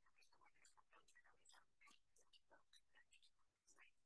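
Near silence, with faint murmured speech well away from the microphone.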